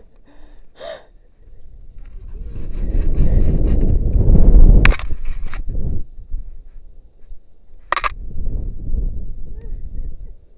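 Wind rushing over an action camera's microphone as a rope jumper swings through the arc of the rope: it builds over a couple of seconds to a loud rush about four to five seconds in and ends with a sharp click, then comes back more weakly. A short cry from the jumper is heard about a second in.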